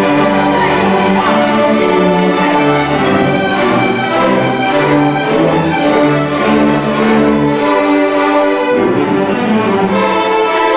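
School string orchestra of violins, violas and cellos playing a piece together, with held bowed notes and a bass line moving beneath them.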